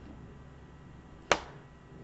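A single short, sharp click about a second and a half in, over a faint steady low hum.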